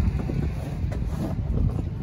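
Wind rumbling on the microphone: a steady low buffeting with no distinct events.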